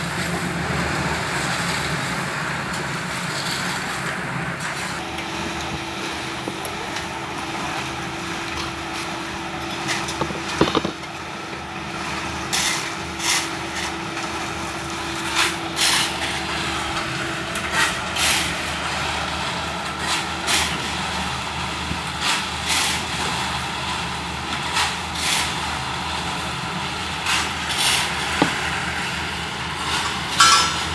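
Portable drum concrete mixer running with a steady engine hum. From about halfway on, shovels repeatedly scrape and crunch into gravel, in short sudden strokes about a second apart.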